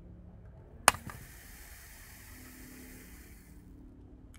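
A Galton board: a sharp knock about a second in, then a steady fine hiss of hundreds of small beads trickling down through the pins into the bins for nearly three seconds, fading out as the last beads settle.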